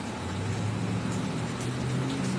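Street noise with a steady low engine hum, as from vehicles idling.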